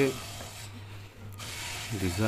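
Wood being rubbed or scraped, a dry scraping hiss for about a second and a half that then fades, over a low steady hum.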